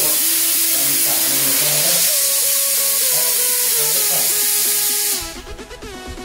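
Steam wand of a two-group La Nuova Era Altea Limited Edition espresso machine opened fully, letting out a loud, steady hiss of steam that cuts off suddenly about five seconds in.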